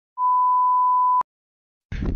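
A single electronic beep: one steady pure tone lasting about a second that cuts off abruptly with a click.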